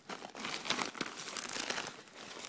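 Plastic-wrapped emergency blankets crinkling as hands rummage through them in a bag, a dense run of irregular crackles.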